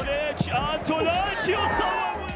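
A football commentator's excited voice, with long calls gliding up and down in pitch, over background music.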